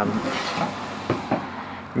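Hardwood frame strips being handled on a table saw's metal top, with a few light knocks and some sliding, the clearest knocks about a second in. The saw is not running.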